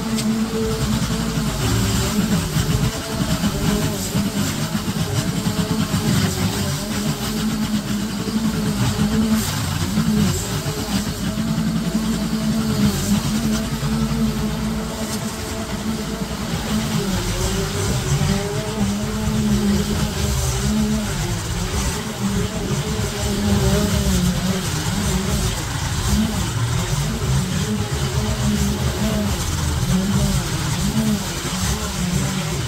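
Small petrol engine on garden power equipment running continuously at working speed, its pitch wavering slightly as the load changes.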